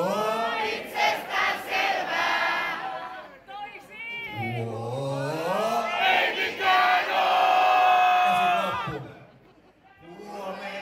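A man's amplified voice giving long wordless shouted calls that glide up in pitch, over crowd noise. The last call is held steady before it cuts off about a second before the end.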